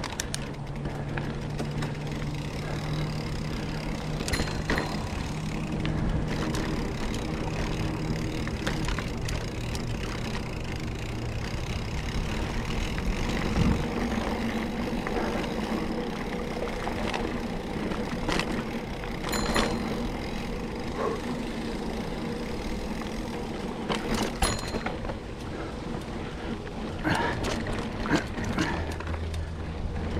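A Specialized Chisel hardtail mountain bike rolling steadily over a packed-dirt singletrack: tyre noise and chain and frame rattle. Several sharp knocks come as it hits bumps, a few of them spread through the middle and a cluster near the end over roots.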